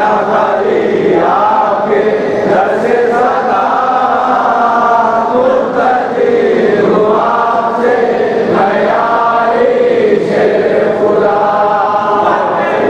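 A group of voices chanting a munajat, a devotional supplication, in long melodic phrases.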